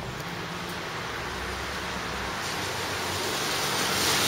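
A car approaching on a rain-wet road, its tyre hiss growing steadily louder. Under it is a low rumble that drops away a little past halfway.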